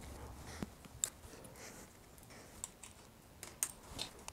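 Faint, irregular small clicks and taps of hand tools working the saddle rail clamp on a Thudbuster suspension seat post while it is being loosened.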